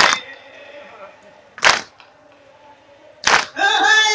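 A group of mourners beating their chests with open palms in unison (matam): three loud slaps about a second and a half apart. Near the end a man's amplified voice comes back in, singing the lament.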